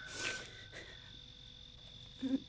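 Faint, steady high-pitched chirring of crickets as night ambience, with a short soft rush of noise just after the start.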